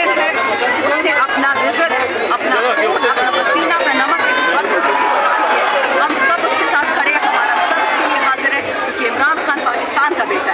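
A woman speaking into close microphones, with other voices chattering around her in a dense crowd.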